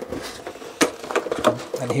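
Plastic blister and cardboard backing card of a carded toy crinkling and clicking as the package is handled and turned over, with several sharp clicks through the middle.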